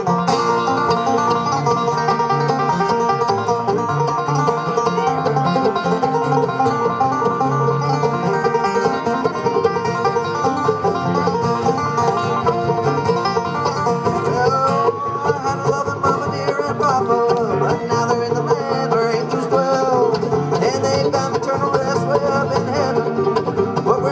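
A live bluegrass string band of banjo, mandolin and acoustic guitar playing an instrumental passage, with the banjo prominent. The instruments come in together at the very start and keep up a steady driving rhythm throughout.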